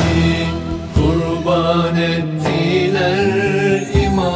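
Turkish Sufi ilahi: a male voice sings long, wavering held notes over a low, steady chanted drone.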